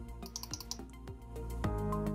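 Soft background music under a run of computer keyboard key clicks.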